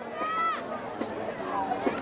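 Voices of people on a football sideline: one short shouted call early on, then faint overlapping chatter.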